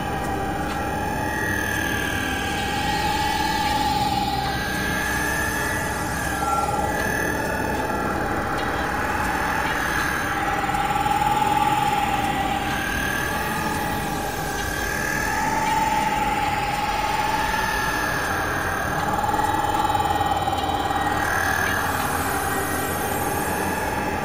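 Experimental electronic drone music: a sustained, slowly wavering high tone like a slow siren, with a fainter higher tone above it, over washes of hiss that swell and fade every few seconds and a low rumble beneath.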